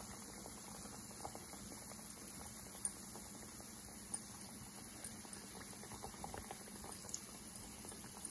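Gram-flour-battered potato slices deep-frying in hot vegetable oil in a pan: a faint, steady bubbling sizzle with small scattered crackles.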